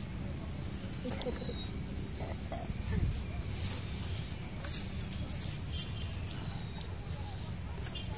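A bird calling a series of short whistled notes that each slide downward, about two a second for the first three seconds, then twice more near the end, over a steady low rumble and a few faint clicks.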